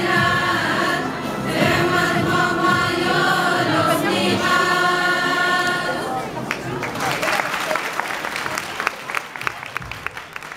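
Girls' choir singing a sustained choral passage that ends about six seconds in, followed by audience applause.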